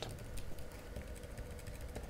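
Typing on a computer keyboard: a run of quick, quiet key clicks.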